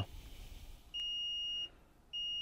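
Digital multimeter's continuity buzzer giving one steady, high-pitched beep of a little under a second, starting about a second in as the probes bridge a trace on the power board: the beep signals the connection has continuity.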